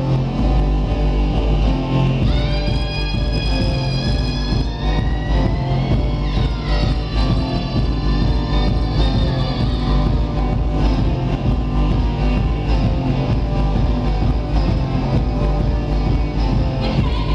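Live electronic rock band playing loud over a PA: electric guitar over heavy bass. A high held lead note comes in about two seconds in, slides in pitch around six seconds, and fades out near ten seconds.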